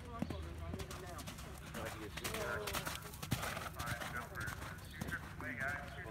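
Hoofbeats of a horse cantering on sand arena footing after clearing a show jump, with people's voices talking over them.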